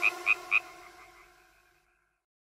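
Cartoon frog croak sound effect: three quick croaks in the first half second over the fading last note of a children's song.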